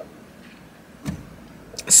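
Quiet car-cabin background with a short low thump about a second in and a brief sharp noise near the end.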